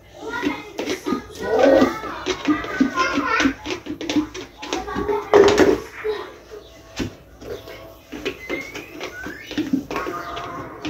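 Indistinct talk with a child's voice among it, over background music, with a few sharp clicks and knocks from items being handled at a sink.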